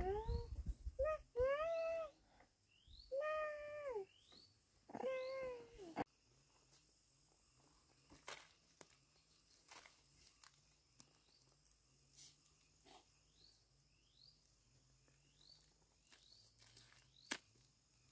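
A small child's voice makes several short whiny, held calls that bend in pitch, in the first six seconds. After that come faint outdoor sounds: a steady high insect hum, short repeated rising chirps, and light crackles of dry leaves being handled on the ground.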